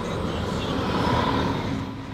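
A car driving past close by, its tyre and engine noise swelling to a peak about halfway through and then fading.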